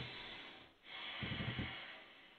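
A man's heavy breathing through the nose: one breath fading out just before the middle, then a second breath about a second in.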